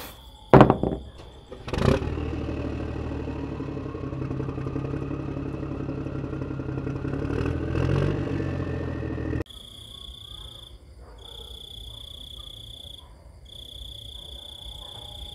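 Two clunks as tin rings are set down on a toy trailer bed. Then the small electric motor of a DIY model tractor runs steadily for about seven seconds with a slowly rising whine and cuts off suddenly. After that, insects chirp in long high trills with short breaks.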